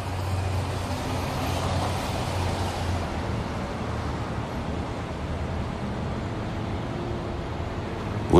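Steady city traffic noise: a continuous low rumble and hiss of vehicles passing in the street.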